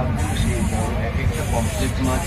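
Steady din inside a crowded passenger train compartment: an even low noise with passengers' voices mixed in.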